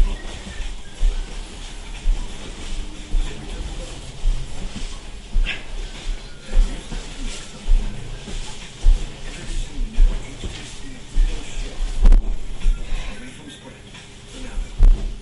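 Dull, irregular thumps of a body hitting a carpeted floor while spinning breakdance windmills, about one every half second to a second, over a television playing music and talk.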